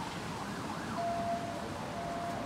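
A siren in the distance: a wailing rise and fall in pitch, then a steady held tone from about halfway through, over steady outdoor background noise.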